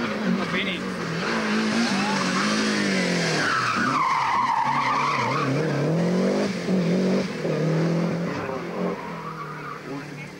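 Rally car engine revving hard, rising and falling in pitch through gear changes as the car drives through a bend. The tyres squeal for a second or two about four seconds in, and the engine sound fades away near the end.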